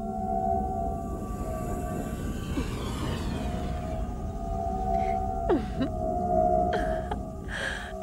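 Eerie electronic drone from a horror-film soundtrack: several steady humming tones held over a low rumble. A sweep of falling glides passes through the middle, and a few sliding, dropping tones and short hissing swells come in the second half.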